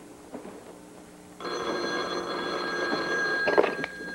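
A desk telephone's bell rings once, a single ring of about two seconds starting over a second in. It ends with the clatter of the handset being lifted off its cradle to answer after that one ring.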